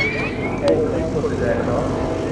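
Small aerobatic biplane's piston engine and propeller running at low power as it taxis, a steady low drone.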